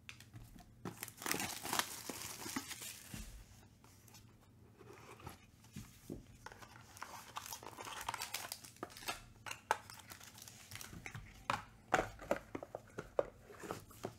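Plastic shrink-wrap crinkling and tearing as a trading card box is unwrapped and opened by hand, with a second spell of rustling partway through. A run of light clicks and taps from the cardboard and plastic being handled comes near the end.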